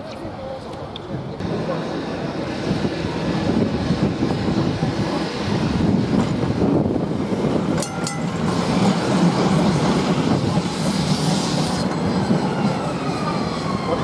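Blackpool heritage tram rolling past on street track: a steady rumble that builds as it draws close, with a few clicks from the wheels about eight seconds in. Near the end an emergency siren starts with falling wails.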